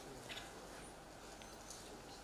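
Quiet auditorium room tone: a faint steady hiss with a few soft short clicks and rustles from the audience.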